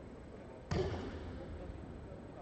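A single sharp thump about two-thirds of a second in, with a short echo trailing after it in a large hall.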